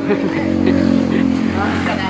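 A motor vehicle engine running steadily, loudest about halfway through, with people talking over it.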